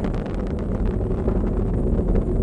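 Falcon 9 first-stage engines heard from the ground during ascent: a steady low rumble with a faint crackle.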